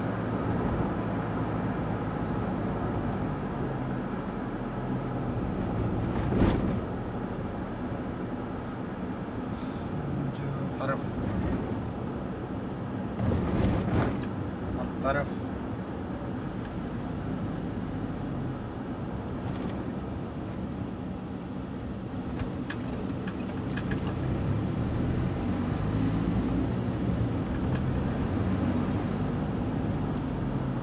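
Car cabin noise while driving: steady engine hum and tyre and road rumble, with a few short knocks, one at about six seconds and a cluster around thirteen to fourteen seconds.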